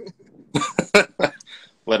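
A man laughing in a quick run of short bursts, starting about half a second in.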